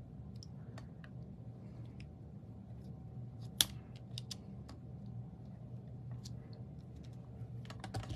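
Fingertips pressing small cardstock squares down onto a card front: scattered light taps and clicks, with one sharper click a few seconds in, over a faint steady low hum.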